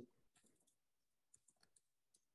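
Near silence, with a scatter of very faint short clicks.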